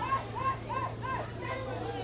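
A crowd's voices: people talking and shouting, with a run of short high-pitched calls in the first second and a half, over a steady low hum.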